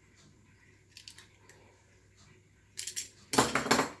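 Small metal objects clinking and rattling as tools and hardware are handled on a table: a few faint clicks about a second in, then a loud clatter in the last second.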